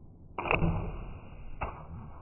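Compound bow shot: the string releases with a sharp snap a little under half a second in, followed by a second sharp knock about a second later.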